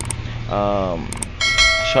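Two quick mouse-click sound effects followed by a bright notification-bell ding, the chime of a subscribe-button animation, ringing on and fading.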